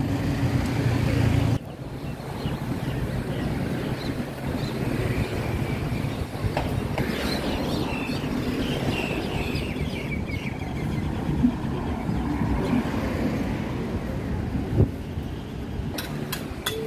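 Outdoor roadside ambience. A vehicle engine idles close by with a steady low hum that cuts off sharply about a second and a half in. Then comes a general background of distant voices and traffic, with two brief knocks in the last few seconds.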